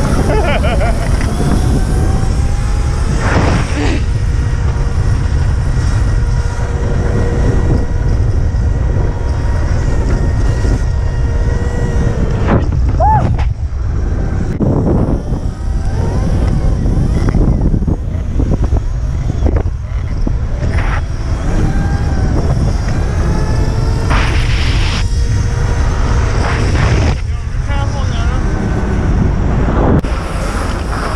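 Wind buffeting the microphone and road noise while riding an electric dirt bike through traffic, with the bike's electric motor whining, held steady for several seconds and later gliding up and down with speed.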